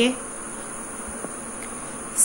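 Steady background hiss with a thin, steady high-pitched whine.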